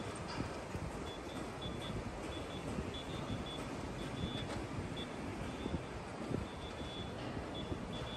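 Construction-site and street ambience: a steady low rumble of machinery and traffic, with wind buffeting the microphone. Short, high warning beeps from construction machinery sound on and off throughout.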